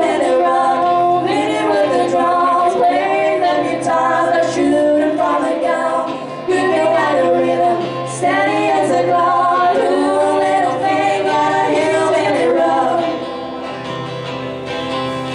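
Two voices singing a country song in harmony, live, with acoustic guitars strumming underneath; the singing comes in phrases with short breaks between them.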